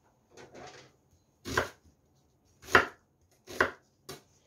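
Chef's knife cutting through an onion onto a wooden cutting board: a soft cut early on, then three sharp chops about a second apart.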